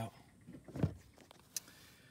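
Faint handling noises: a short low sweep and a few light ticks, with one sharp click about one and a half seconds in.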